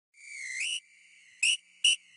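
A high whistle: one tone swelling for about half a second and bending upward at its end, then two short chirps near the end.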